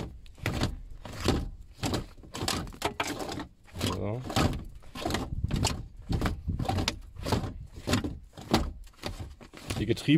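Manual gear lever being worked back and forth by hand, with a steady run of short clunks and rattles from the lever and its shift linkage, two or three a second.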